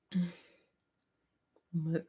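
A woman's short voiced sound at the start, a couple of faint clicks about a second in, then her speech starting near the end.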